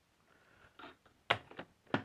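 Mostly quiet, with two short, sharp clicks about half a second apart in the second half: handling noise.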